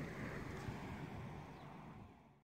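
Faint outdoor background noise with a little wind on the microphone, fading out near the end.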